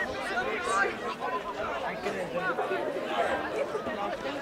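Several voices talking and calling out at once, overlapping so that no words are clear: rugby players and sideline spectators.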